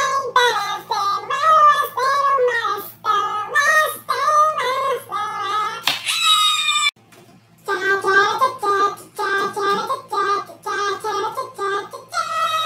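A high-pitched voice singing in short, bending phrases, with a brief shrill squeal about six seconds in, then a short pause before the singing starts again.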